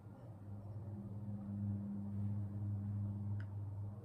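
A low, steady hum that swells about half a second in and eases off near the end.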